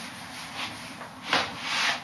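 Whiteboard eraser rubbing back and forth across a whiteboard, wiping it clean, with louder strokes in the last second.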